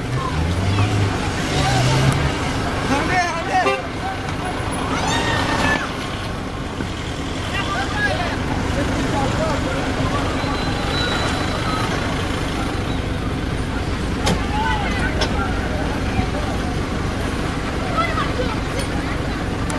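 People's voices calling out over a steady background rumble. The voices come thickest in the first six seconds and again briefly about fourteen seconds in.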